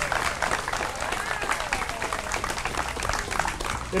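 An audience applauding, the clapping thinning out near the end.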